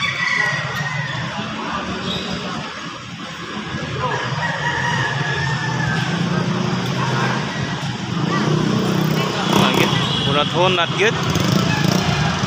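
Small motorcycles running at low revs, getting louder in the second half, with people talking over them.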